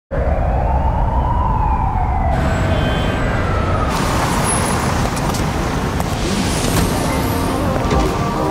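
City street noise: a siren wails once, rising and then falling over the first two seconds or so, over a steady rumble of traffic.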